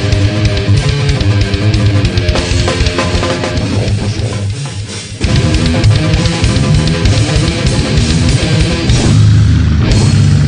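Goregrind demo recording: heavily distorted electric guitars over fast drumming. About four seconds in, the band thins out and drops in level, then crashes back in at full loudness just after five seconds.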